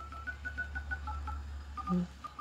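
Samsung Galaxy phone's dial pad tones: rapid short two-note beeps, about ten in quick succession with a brief pause before the last few, one for each digit tapped on the keypad. The dial pad tone setting is on, a sound the owner calls annoying.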